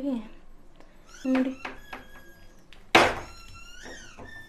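A sharp, loud metal clank about three seconds in, a utensil knocking against the pan on the stove, ringing briefly afterwards; light kitchen clicks and a short voice sound come a little over a second in.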